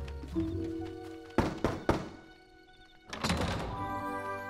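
Two loud knocks on a heavy wooden door, about half a second apart, over soft background music.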